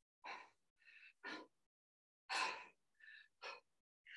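Heavy breathing of a man doing press-ups: six short, hard breaths in and out, the loudest about halfway through.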